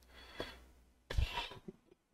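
Mostly quiet room tone with the music stopped, broken about a second in by a short breath-like sound close to the microphone.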